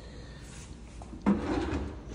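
A kitchen cabinet drawer pulled open on its slides, starting suddenly just over a second in.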